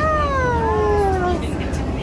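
A young child's long high-pitched squeal that falls slowly in pitch for about a second and a half, with a shorter one near the end, over the steady low hum of a bus.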